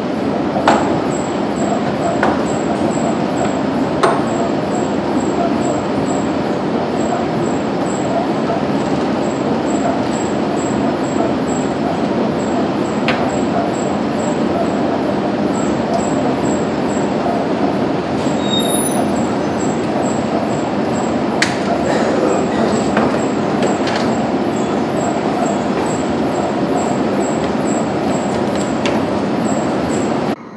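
Laminar flow cabinet blower running with a loud, steady rush of air, with a few light clicks and knocks from tubes being handled on the work surface.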